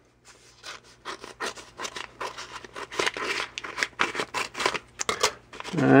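Scissors cutting open a paper envelope along its edge: a quick, uneven series of short snips with paper rustling.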